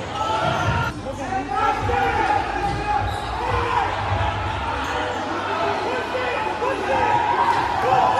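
A basketball bouncing on a hardwood gym floor during play, over the steady chatter of a crowd of voices.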